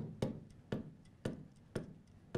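A pen tapping against a large display screen as digits are written, four light taps about two a second.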